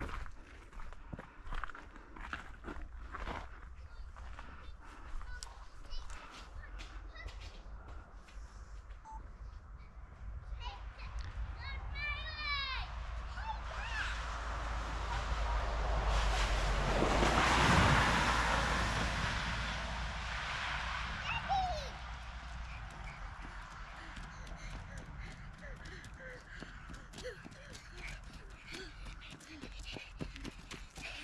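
Footsteps on a leaf-covered woodland path, with wind rumbling on the microphone. About 12 seconds in comes a short run of high chirps, then a rushing noise swells to a peak and fades away again.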